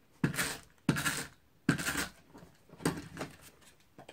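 Adhesive tape being pulled from a small handheld tape dispenser: four short strokes, roughly one a second.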